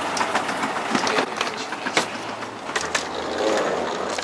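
An escalator running, with a steady mechanical rumble and irregular sharp clicks and knocks.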